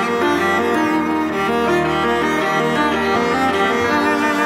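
Instrumental passage between sung lines: a bowed viola playing sustained melody notes over piano and keyboard accompaniment.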